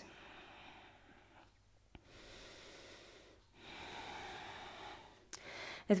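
A woman taking slow, deep breaths in and out through the nose, heard faintly: three long breaths, the last one, starting about three and a half seconds in, the loudest. A faint click comes just before the second breath.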